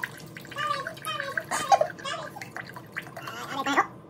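Beef broth glugging and gurgling out of a carton as it is poured into a glass measuring cup, in uneven gulps.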